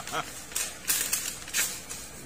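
Paper envelope being handled, with a few short rustles and crinkles of stiff paper.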